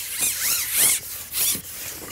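A carbon fishing pole being handled, its surface rubbing with four or five short squeaky swishes.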